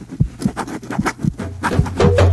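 Soundtrack percussion: low, soft drum beats a few tenths of a second apart with quick clicking strokes above them. A low held bass note comes in about one and a half seconds in as the music builds.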